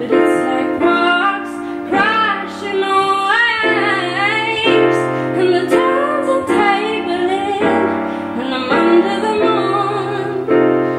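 A woman singing while accompanying herself on a grand piano, her voice bending and wavering through held notes over piano chords that change about once a second.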